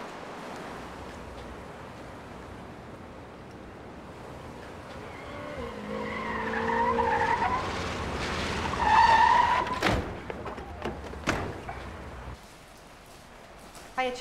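City street traffic with a car's tyres squealing, a wavering squeal that builds over a few seconds and peaks about nine seconds in, followed by two sharp knocks.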